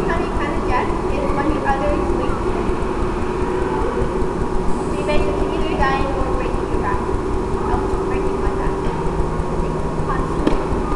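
A woman's voice talking, distant and hard to make out, over a loud steady rumble and hum in a large hall.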